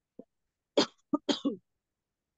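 A person coughing: a quick run of four coughs just under a second in.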